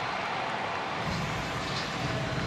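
Steady, even crowd noise of a basketball arena game broadcast, with no distinct dribbles or sneaker squeaks standing out.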